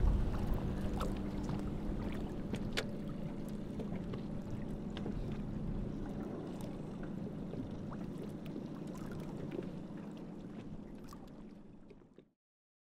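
Outdoor ambience around a small sailboat moving off from a pier: a steady low hum over a wash of water and air noise, with a few light clicks and knocks from the boat. It fades away near the end.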